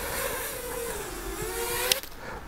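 Small FPV drone's propellers and brushless motors whining as it comes in low to land. The pitch sags in the middle and climbs again near the end, and a sharp click comes just before the end.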